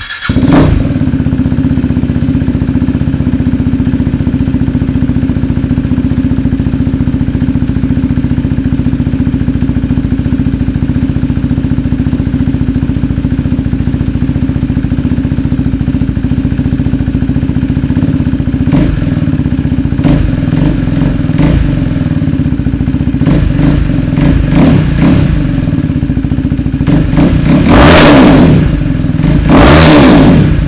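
A KTM 390 Duke's single-cylinder engine, breathing through a replica SC Project CR-T slip-on exhaust, fires up at the start and idles steadily. From about 19 seconds in it is blipped with a series of short throttle revs, and the loudest revs come near the end.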